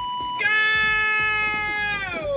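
A short single-pitch censor bleep, then a long, high, steadily held shout from a man in the clip, sliding down in pitch at the end.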